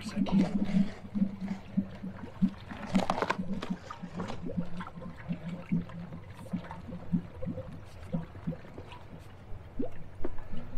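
Water gurgling and sloshing inside a flooded steel well casing as the pump's downpipe and pitless adapter are worked down into place, in irregular short pulses a few times a second with a louder surge about three seconds in.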